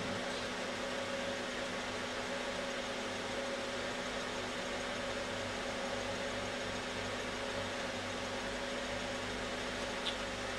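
Small electronic cooling fans on a running pulse width modulator, with a steady whirring hum and a steady mid-pitched tone that does not change.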